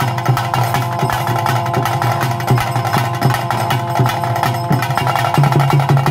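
Traditional Tulu ritual music for a Bhoota Kola dance: rapid, even drum strokes over a steady held drone, which grows stronger near the end.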